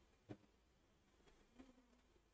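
Near silence: room tone, with one faint click about a third of a second in.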